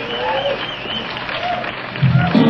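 Club audience applauding and cheering between songs, with a warbling whistle and a few shouts over the clapping.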